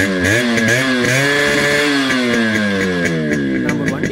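Yamaha RX100's two-stroke single-cylinder engine revved by hand on the throttle while standing: a couple of quick blips, then a rev that climbs for about a second and slowly falls back toward idle.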